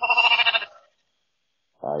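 A lamb gives one short, quavering bleat at the start, picked up by a Ring camera's microphone. A man's voice starts speaking near the end.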